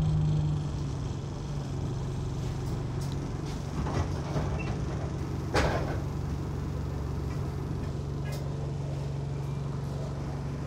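Diesel single-deck bus engine idling steadily, heard from inside the saloon, a little louder in the first second. Two short knocks cut through about four and five and a half seconds in, the second the louder.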